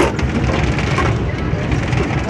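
Fishing boat's engine running with a steady low rumble, with a single knock on deck right at the start.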